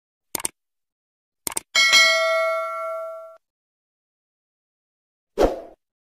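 Subscribe-button sound effects: two quick double mouse clicks, then a bell ding that rings out and fades over about a second and a half. A short thump follows near the end.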